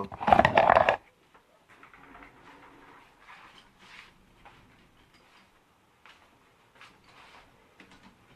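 Phone camera being picked up and moved: a loud rustling scrape for most of the first second, then faint scattered rustles and light knocks as it is handled.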